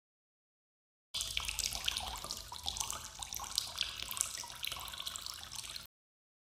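A stream of liquid splattering onto sandy dirt, starting suddenly about a second in and cutting off just before the end.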